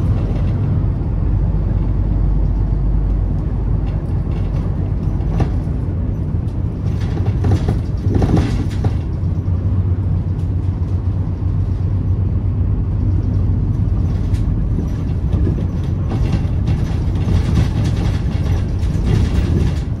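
Inside a moving city bus: steady low rumble of the engine and tyres on the road, with a few short louder noises around the middle.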